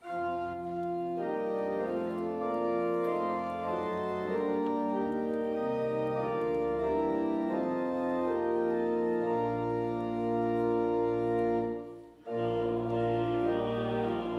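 Church organ playing the introduction to a hymn in held, sustained chords, with a short break about twelve seconds in before it starts again.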